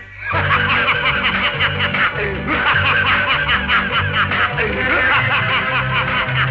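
A man laughing in rapid, rhythmic bursts as part of a comic Tamil film song, over a band's steady bass line. The music dips briefly at the very start.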